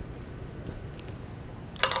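Faint metal clicks of a brass gas regulator being screwed by hand onto an argon cylinder valve, over a low steady room hum. A man starts speaking near the end.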